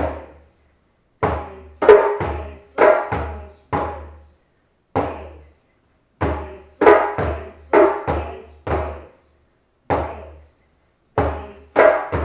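Djembe played at a slow teaching pace, one stroke at a time with gaps between. Deep bass strokes and sharper slap strokes each ring out briefly, in a repeating pattern of spaced single strokes and short quick runs.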